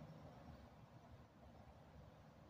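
Near silence: faint steady background hiss with a weak low rumble.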